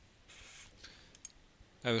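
A few faint clicks of a computer mouse over a soft hiss, as the presentation slide is advanced; a man starts speaking near the end.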